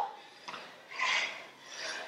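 Hard, noisy breathing during exercise: two short breaths, one about a second in and one near the end.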